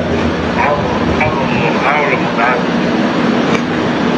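Short fragments of a voice speaking over a steady low drone.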